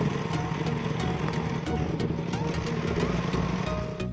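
Background music with a steady beat, laid over the running noise of a sports motorcycle on a rough dirt road. The riding noise drops away near the end, leaving the music.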